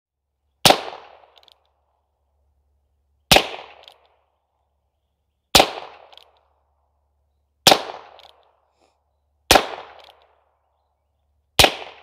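Six single shots from a Heritage Barkeep Boot .22LR single-action revolver, fired slowly at about two-second intervals, each a sharp crack with a short echo trailing off.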